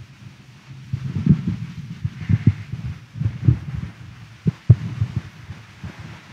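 A run of irregular low thuds and bumps, about a dozen over a few seconds, with two sharper knocks about four and a half seconds in, the second the loudest.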